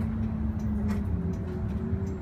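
Engine of an automatic-transmission city bus running while under way, heard from inside the cabin as a steady low hum whose pitch steps down slightly about a second in. A single short click comes near the same moment.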